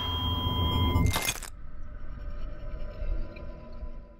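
Electronic trailer sound design: steady high beeping tones over a low hum, cut by a short, sharp noisy hit just over a second in, then a low drone with faint tones that starts dying away near the end.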